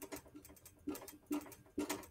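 Dry-erase marker writing a word on a whiteboard: a quick, irregular series of short squeaks and taps as the letters are drawn.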